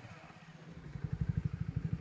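Motorcycle engine idling: a low, rapid, even puttering that grows a little louder about half a second in.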